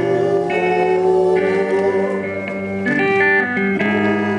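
A live rock band playing a song, with guitar and long held chords that change about once a second.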